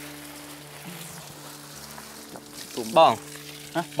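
Water spraying from a garden hose onto young trees and leaves, a steady hiss, with held background-music notes beneath it.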